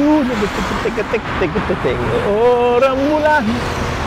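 A man singing a Malay pop song, short phrases at first and then long held notes in the second half, over steady road traffic.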